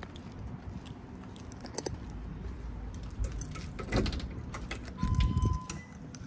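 Walking into a shop while filming on a phone: footsteps and handling rumble, with metallic jingling a few times. A door opens with a thump about five seconds in, and a short steady beep, like an entry chime, sounds just before the end.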